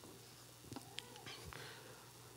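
Near silence: faint room tone with a low hum and a few soft ticks about a second in.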